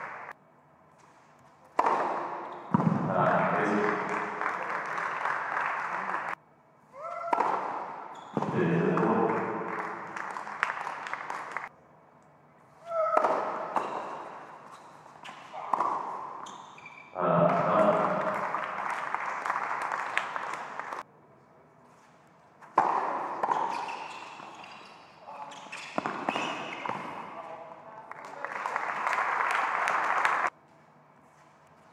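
Indoor tennis match audio: a ball bouncing on a hard court and being struck by rackets, with short bursts of voices in a large hall. The sound comes in several clips of a few seconds each, with abrupt cuts to near silence between them.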